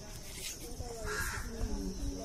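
A short, harsh bird caw about a second in, with faint voices around it.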